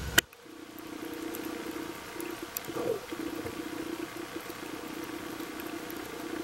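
Underwater ambience picked up through a camera's waterproof housing. A sharp click comes just after the start and cuts off a low rumble. Then a steady low hum runs on, with faint scattered clicks.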